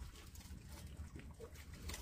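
A faint, brief cat meow about a second and a half in, over a quiet low rumble.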